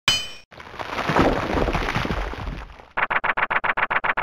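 End-card sound effects for an animated logo: a metallic clang that rings briefly, then a rumbling crash-like swell lasting about two seconds, then a rapid run of clicks, about a dozen a second, as the icons pop in.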